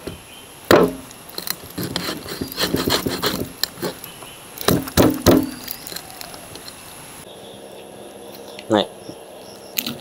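A meat cleaver chopping into a skinned goat's head on a wooden block: a sharp chop of the blade through bone into the wood about a second in, then a quick run of three chops near the middle, with lighter knocks between.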